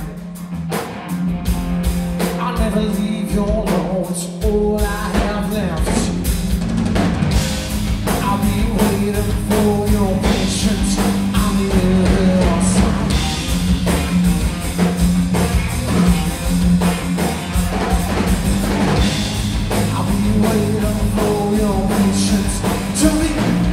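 A live rock trio playing: electric guitar, electric bass and drum kit. The bass and kick drum come in strongly about four seconds in, and the full band plays on from there.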